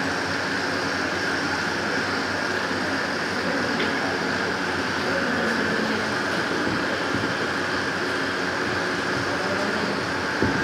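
Steady, even whooshing room noise at a constant level, like a running fan or air-conditioning unit, with no distinct events.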